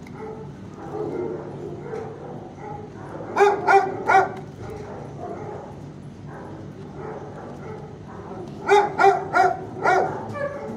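Shelter dogs barking: a loud run of three sharp barks about three seconds in and another of four near the end, over steady fainter barking and yelping.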